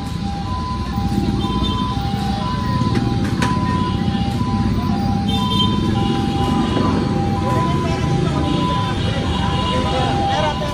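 Busy street noise: crowd chatter and traffic, with an electronic beeping at two steady pitches that breaks off and resumes every second or so throughout.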